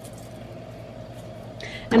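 A low, steady background hum with a faint even tone under it. Near the end comes a short breath, then a woman starts to speak.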